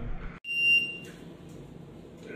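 Electronic shot timer's start beep: one steady, high-pitched beep lasting about half a second, the signal for the shooter to begin the run.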